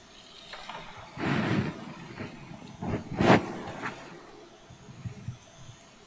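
Rustling and bumps of people sitting down, with a sharp knock a little after three seconds in.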